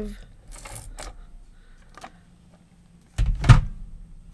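Handheld adhesive tape dispenser laying a strip of adhesive onto a paper label, with faint plastic rattles, then one loud clunk of hard plastic a little past three seconds in.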